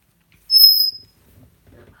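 A pet bird's single high-pitched whistle call, about half a second long, a steady note that slides down slightly as it fades.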